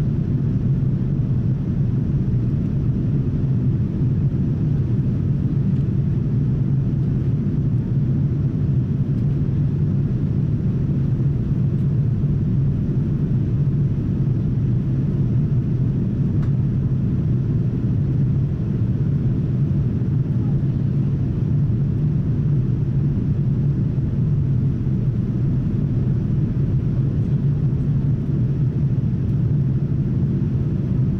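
Steady low drone of a Boeing 787's cabin in flight: engine and airflow noise heard from inside, unchanging throughout.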